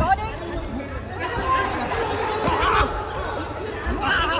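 Voices calling out and talking in a large, echoing hall, with no clear words.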